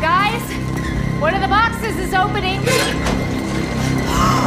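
TV drama dialogue: a voice speaking over tense background music with a steady low drone.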